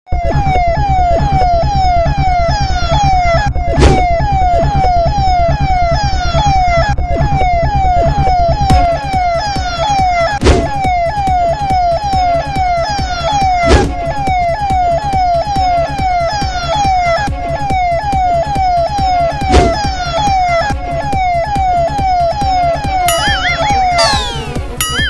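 Police siren sound effect: a loud wail that sweeps down in pitch over and over, about one and a half times a second, over a steady low pulsing beat. It is broken by a few sharp hits, and a springy boing effect comes in near the end.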